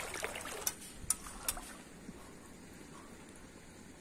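Faint trickle of shallow water over a wet reef flat, with three light clicks about a second in.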